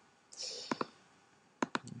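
Computer mouse button clicks: two sharp clicks a little past half a second in, then a quick run of three near the end.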